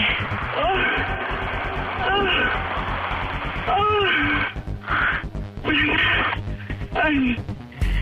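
Background music with a steady low beat under a woman's wordless moans and sighs, heard through a telephone line.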